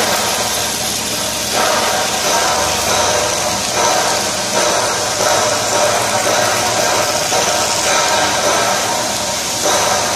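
Electric welding arc hissing and crackling over the steady machine noise of a steel-fabrication shop; the sound shifts about a second and a half in and again near the end.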